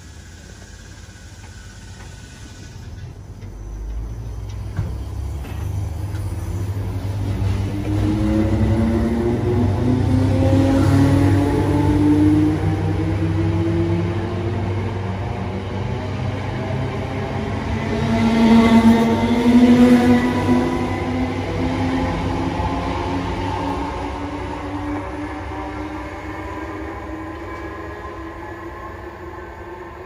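Electric multiple-unit passenger train running past on overhead-wire electrified track, with a low rumble of wheels on rail and a motor whine that climbs steadily in pitch as it gathers speed. It is loudest about two-thirds of the way through, then fades as the train draws away.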